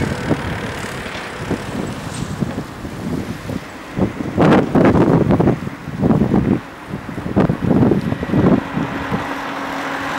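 Wind buffeting the microphone in irregular gusts, loudest in the middle, over a steady background of street traffic. A steady low hum comes in near the end.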